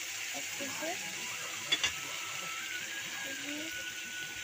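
Small fish frying in a kadai, stirred and scraped with a metal spatula, over a steady sizzle, with one sharp clink of spatula on pan a little under two seconds in.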